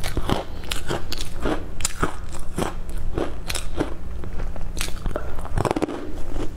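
Close-miked crunching bites and chewing of a crisp fried dough twist, with sharp irregular crackles about once or twice a second.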